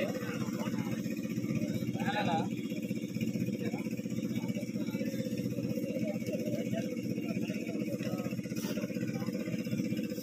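An engine running steadily with a fast, even pulse, under faint crowd voices.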